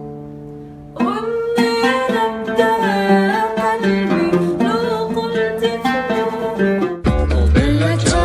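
Oud plucked solo: a note rings out and fades over the first second, then a new melodic phrase begins with sliding notes. Near the end it cuts suddenly to a louder produced song with a heavy bass beat.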